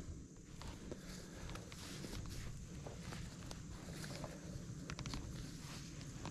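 Faint rustling and light scattered clicks of a climbing rope being handled and pulled around a tree trunk while a running bowline is tied.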